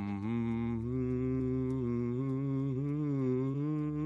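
A person humming a hymn tune in long held notes that step gently up and down in pitch.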